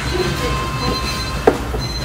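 Steady low rumble of restaurant background noise, with faint voices and one sharp click about one and a half seconds in.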